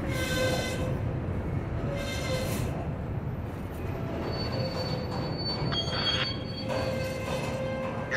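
Freight cars (covered hoppers and a tank car) rolling slowly past: a steady rumble of steel wheels on rail, broken by high-pitched wheel squeals. There are short squeals near the start and about two seconds in, and a longer run of them from about four seconds to near the end.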